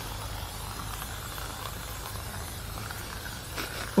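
Aerosol can of tyre-shine spray hissing steadily as it is sprayed onto a car tyre's sidewall; the can is nearly empty.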